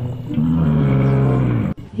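Dinosaur bellow sound effect: one low, drawn-out call that falls slightly in pitch and cuts off abruptly near the end.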